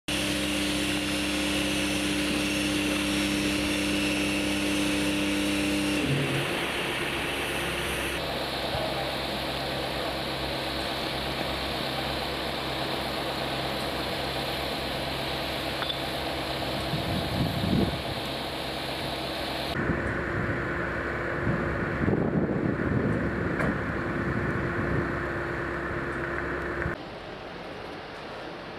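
An engine running steadily, its hum changing abruptly several times. Irregular knocks come in about two-thirds of the way through.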